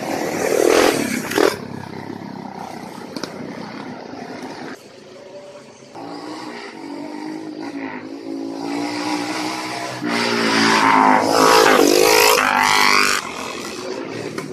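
Trail motorcycles riding past on a narrow lane: one goes by close about a second in, another approaches with its engine note rising and falling, and the loudest passes near the end, its pitch falling as it goes by.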